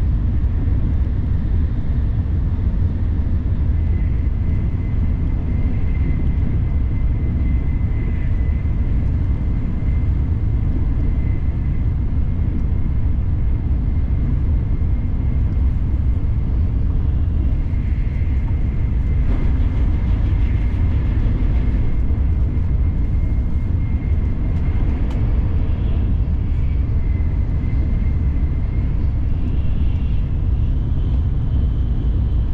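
Shinkansen bullet train running at speed: a steady, loud low rumble, with a faint thin high whine riding over it from a few seconds in until near the end.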